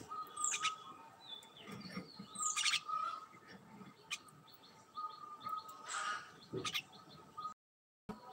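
Bird chirping in short, sharp calls that fall in pitch, the loudest about half a second, two and a half and six seconds in. The sound drops out briefly just before the end.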